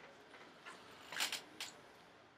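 A few short, soft clicks and rustles of handling, a little past a second in: gloved hands pressing the aluminium bottom case of a MacBook Air into place and letting go.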